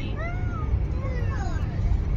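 Two high, drawn-out meow-like calls, each rising and then falling in pitch, over the steady low rumble of a car driving.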